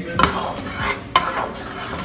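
A long utensil stirring seasoned pasta in a large pan: a steady scraping and shuffling, with two sharp clacks against the pan, about a quarter of a second and just over a second in.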